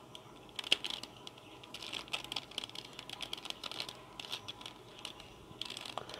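A 3x3 mirror cube having its layers turned by hand: light, rapid plastic clicking and clattering of the pieces. It starts about half a second in and comes in irregular quick runs.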